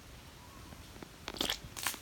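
Two short hissing mouth noises from a man burning from a Carolina Reaper chili, about a second and a half in and again just before the end.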